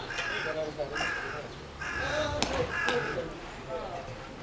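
A series of harsh, loud calls, about one a second, with a single sharp crack about two and a half seconds in.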